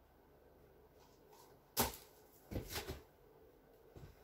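Knocks from handling the paint-pouring gear: one sharp knock a little before halfway, then a short clatter of smaller knocks soon after.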